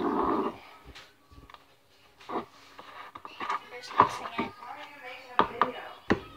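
A spoon stirring slime in a plastic bowl, with several sharp knocks of the spoon against the bowl, under faint voices.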